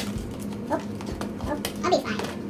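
A voice in a few short murmured sounds, with faint clicks from a plastic tub lid being handled.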